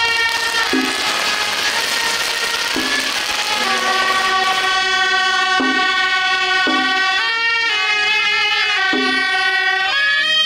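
Suona, a double-reed horn with a brass bell, playing a melody of long held notes that step up and down in pitch. A noisy wash sits under it for the first few seconds.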